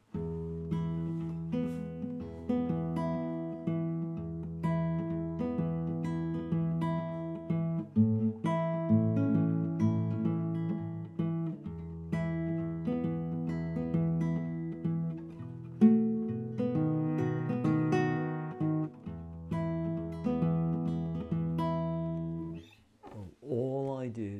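Classical guitar fingerpicked through a 12-bar blues progression in E: a repeating bass note under picked treble notes, the chord changing several times along the way. The playing stops shortly before the end.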